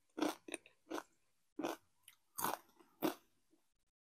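Doritos tortilla chips being chewed, a run of about six crisp crunches a half-second to a second apart that die away near the end.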